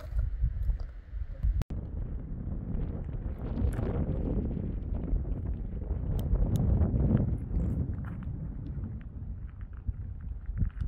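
Wind buffeting the microphone outdoors: a low, uneven rumble that swells in the middle and eases near the end, with a brief dropout about two seconds in.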